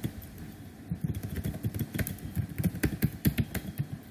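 Typing on a computer keyboard: quick, irregular key clicks, sparser in the first second and then coming several to a second.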